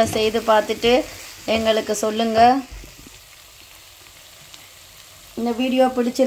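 A wooden spatula stirring fried liver pieces in a non-stick wok, with a faint frying sizzle. The spatula scrapes the pan in short pitched, squeaky strokes during the first two and a half seconds. They stop for about three seconds, when only the sizzle is heard, and start again near the end.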